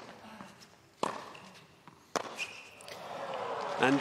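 Tennis ball struck by rackets in a rally, sharp hits about a second apart, followed by crowd noise that swells into cheering near the end as the match point is won.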